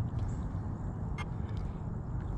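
Steady low outdoor background rumble with a faint short click about a second in.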